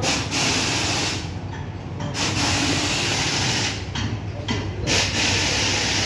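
Compressed air hissing in repeated bursts, each lasting from about half a second to a second and a half with short breaks between them, over a steady low hum.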